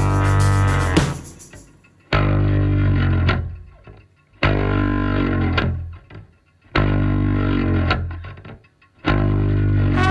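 Closing bars of a rock song: the full band sound stops about a second and a half in, leaving single distorted electric guitar and bass chords struck about every two seconds, each left to ring and fade away.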